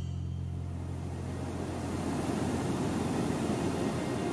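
Water of the Zambezi rushing over Victoria Falls: a steady roar that swells in over the first couple of seconds, while a low held note fades out underneath.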